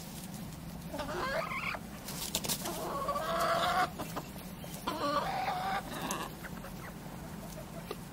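Naked neck chickens calling: three drawn-out clucking calls, each about a second long and about a second apart, with quieter scattered clicks between them.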